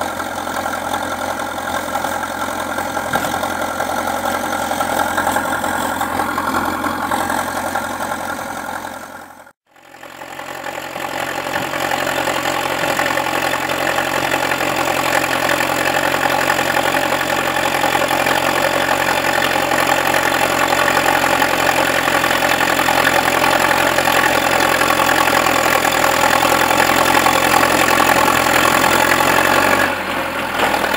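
Zetor 7211 tractor's diesel engine running steadily as the tractor pushes through snow with its front blade. The sound fades out briefly about a third of the way through and then comes straight back at the same steady level.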